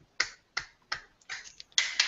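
A lone person clapping, about five sharp claps unevenly spaced over two seconds.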